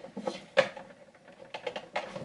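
Fingers picking and tapping at a stiff advent calendar door that will not open, giving a string of irregular small clicks. The sharpest click comes about half a second in, and the clicks bunch up near the end.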